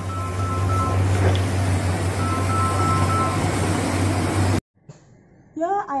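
Loud steady outdoor rumble and hiss with a low hum, with a two-tone electronic beeping sounding twice, each time for about a second. The sound cuts off abruptly about four and a half seconds in.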